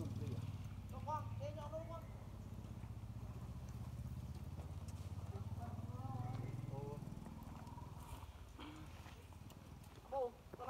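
A low, steady engine hum with an even pulse fades out about seven or eight seconds in. Faint wavering voices sound over it about a second in and again around six seconds.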